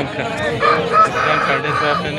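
A rooster crowing: one long drawn-out crow beginning about half a second in, amid voices.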